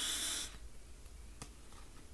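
A short breathy exhale, a sharp breath out, in the first half second, then quiet room tone with one faint click about one and a half seconds in.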